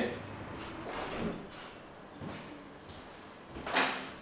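An interior door being opened by its lever handle, a short latch-and-door clack a little before the end, with a few faint knocks and handling sounds before it.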